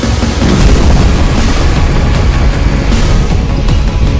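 Loud, dramatic action soundtrack music laid over a heavy, rumbling explosion effect that swells about half a second in, standing in for an air-strike blast on a hilltop.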